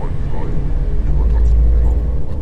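A loud, deep rumble that swells to its strongest in the second half, with faint voices over it.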